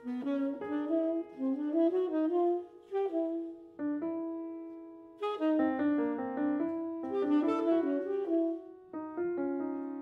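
Grand piano and soprano saxophone playing improvised contemporary jazz: quick runs of notes in the first three seconds, a note left to die away for about a second, then a busier passage from about five seconds in.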